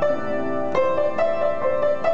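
Upright piano played solo, an improvisation in A minor: a slow melody of single notes struck over held lower notes.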